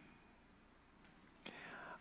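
Near silence: room tone in a pause of a man's reading, with a faint intake of breath in the last half second before he speaks again.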